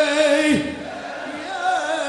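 A male reciter chanting a latmiya (Shia mourning lament) into a microphone, holding long notes with a wavering pitch, with other voices sounding at the same time. About half a second in, one pitch slides steeply down.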